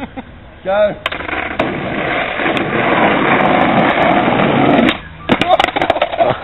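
Skateboard wheels rolling on rough asphalt, a rumble that grows louder as the rider approaches, then cuts off about five seconds in. A few sharp clacks follow as the board pops for an ollie and clatters down on the road.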